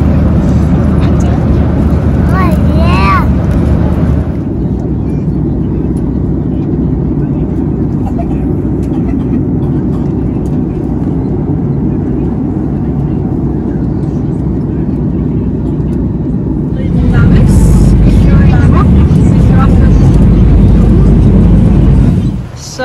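Steady low roar of a jet airliner's cabin in flight, engine and air noise, loud throughout, dropping somewhat after about four seconds and rising again near the end. Voices come in briefly over it twice.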